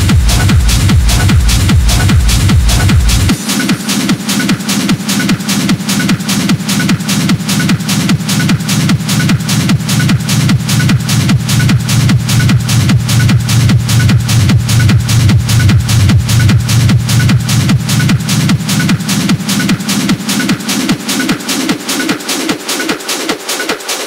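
Hard techno track playing: a driving four-to-the-floor beat with fast, dense percussion. About three seconds in, the deepest bass drops out, leaving a pulsing mid-bass line under the percussion.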